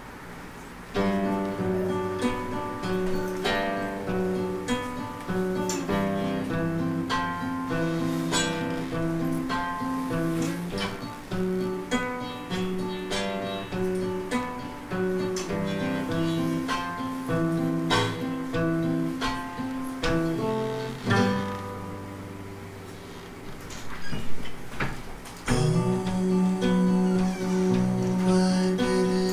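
Acoustic guitar fingerpicked as a solo song intro, single plucked notes in a steady flowing pattern. The notes start about a second in, ease off into a softer stretch, and return louder and fuller near the end.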